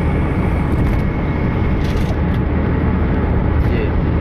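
Steady low rumble of a vehicle driving at speed on a highway, heard from inside the cabin: engine and road drone, with a brief hiss about halfway through.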